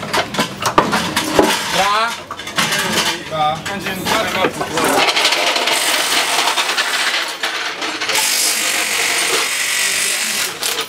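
Metallic clinking and rattling of tools at a rally car's wheel during a service-park wheel change, with brief voices in between. In the second half it gives way to a steady hiss of background noise.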